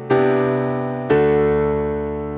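Sampled Ravenscroft 275 concert grand piano (VI Labs virtual instrument) playing two chords about a second apart, each struck and left to ring and fade.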